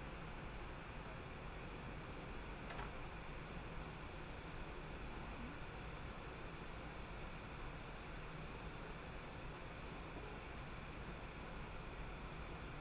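Faint steady hiss of room tone, with one short faint click about three seconds in.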